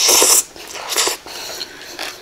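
Close-up eating sounds: a loud, noisy slurp-and-bite as a mouthful of spicy cucumber salad with rice noodles goes into the mouth, a shorter one about a second in, then quieter chewing.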